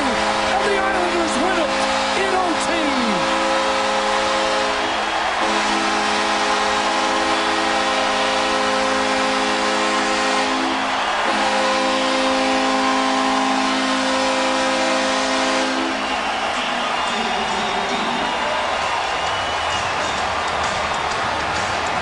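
Arena goal horn sounding a held multi-note chord in three long blasts over a cheering crowd, marking an overtime game-winning goal. The horn stops about three-quarters of the way through, leaving the crowd noise.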